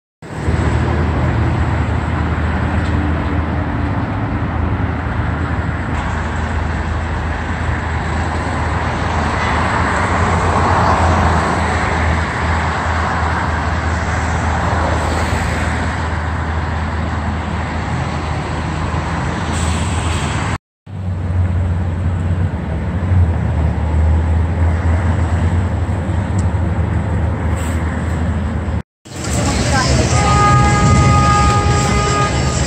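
Busy city street traffic: a steady wash of passing cars and buses over a low engine hum, broken twice by brief silences in the last third.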